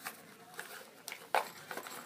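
Quiet handling noise with one sharp click about a second and a half in.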